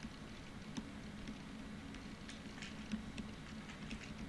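Faint, irregular light ticks and taps of a stylus writing on a tablet computer's screen, over a low steady hum.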